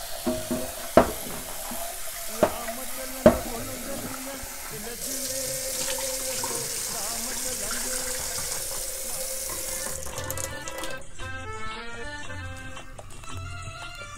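Kitchen tap running into a saucepan of rice as it is rinsed, with three sharp knocks in the first few seconds, then the cloudy rinse water poured off into a stainless steel sink under the still-running tap. Background music comes in for the last few seconds.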